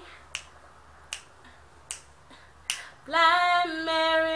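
Four finger snaps, evenly spaced a little under a second apart, keeping time between sung lines. A woman's unaccompanied singing voice comes back in about three seconds in.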